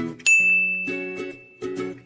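A bright ding sound effect about a quarter second in, ringing on one high tone for over a second as it fades. It marks the answer picture on the slide. Soft background music plays underneath.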